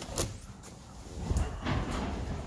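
A glass shop door knocking shut about a fifth of a second in, then a steady low outdoor rumble with a few more knocks in the second half.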